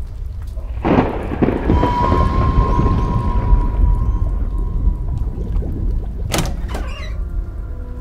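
A low rumble with a noisy hiss over it swells up suddenly about a second in, with a thin steady high tone over it for a few seconds and a sharp crack about six seconds in.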